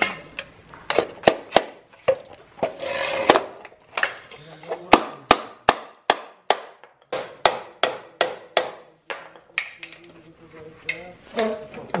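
Hammer driving a chisel-type tool into a steel scooter exhaust silencer to break out the catalytic converter inside: a run of sharp metallic strikes, two or three a second, with a short scraping stretch about three seconds in and fewer strikes near the end. The catalyst is holding fast and is hard to knock out.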